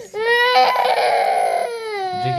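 Toddler crying with a toothbrush and dental mirror in his mouth: one long, loud wail that turns harsh and rasping in the middle.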